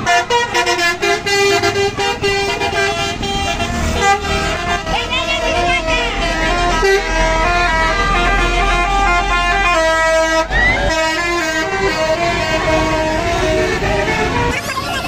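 Passing buses sounding their horns in a run of changing tones. A deep engine rumble swells through the middle, and voices from the roadside crowd sound alongside.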